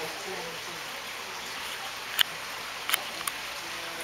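Faint voices over a steady hiss of background noise, with a sharp click about two seconds in and two more, quieter, near three seconds.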